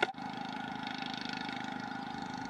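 A steady mechanical drone made of several held tones, with a short click at the very start.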